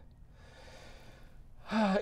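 A man's audible breath in between sentences: a soft, airy inhale lasting about a second before his speech resumes near the end.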